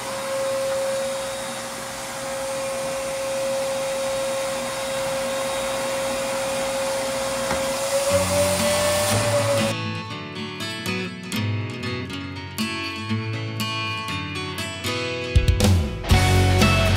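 Floor-stripping equipment used to pick up wax-stripper slurry runs steadily with a high, even whine. At about ten seconds the machine noise cuts off and background music with guitar carries on alone.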